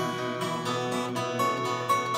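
Twelve-string acoustic guitar capoed at the third fret, fingerpicked in a steady non-alternating pattern, its picked notes ringing over one another as an accompaniment.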